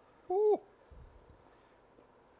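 A person's short hummed "mm", one brief tone that arches up and then falls away about a third of a second in.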